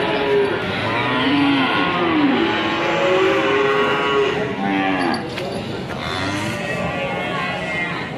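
Cattle mooing, with several calls overlapping one after another.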